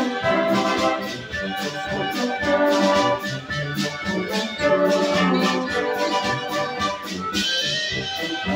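German-style brass band playing live: tubas, trumpets, euphoniums and a clarinet in a tune with a steady, even beat.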